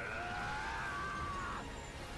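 A sustained, whine-like tone from the anime's soundtrack. It drops sharply in pitch at the start, then sinks slowly for about a second and a half and fades out.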